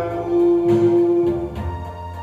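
A man singing into a microphone over a karaoke backing track, holding one long note for about a second before the accompaniment carries on alone.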